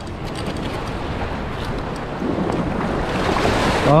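Waves washing and surging over jetty rocks, with wind on the microphone; the wash grows louder toward the end.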